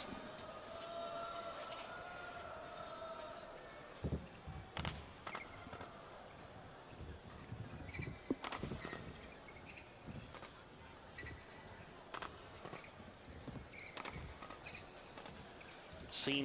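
Badminton rally: sharp racket strikes on the shuttlecock at irregular intervals, about a dozen over ten seconds, starting about four seconds in. Before the rally, only faint arena murmur.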